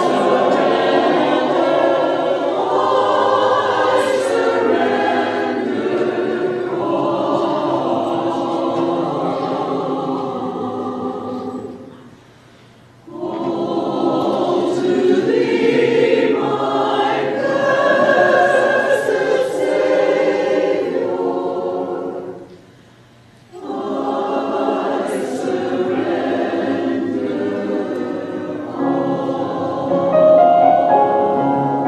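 Church choir singing a hymn or anthem in long phrases, with two brief breaths between phrases, about twelve and twenty-three seconds in.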